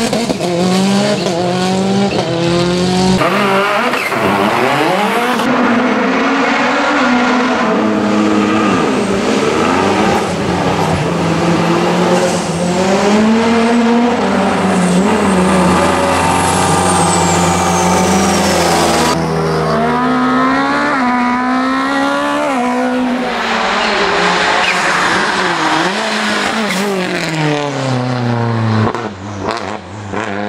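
Lancia Delta racing car's engine revving hard through the gears, its pitch climbing steeply and dropping back at each shift or lift, over and over as it drives the course. The sound jumps abruptly a few times where separate passages are joined.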